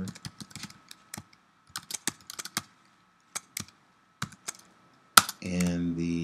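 Typing on a computer keyboard: irregular keystrokes with short gaps, and one louder key strike about five seconds in.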